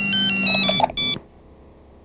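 A short electronic ringtone-style jingle: a quick run of pure beeping notes stepping up and down for under a second, then one more short note after a brief gap.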